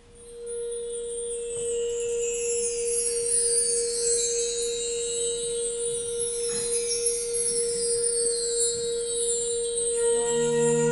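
Soft opening of a concert band piece: one steady held note with shimmering high chimes sweeping down and up above it, swelling in at the start.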